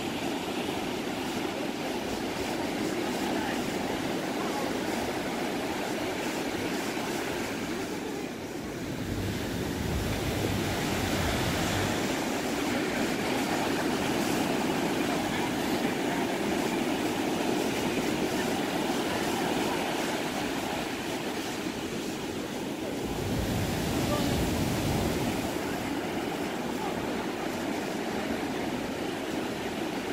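Ocean surf washing steadily onto a sandy beach, with two heavier swells of breaking waves about nine and twenty-three seconds in.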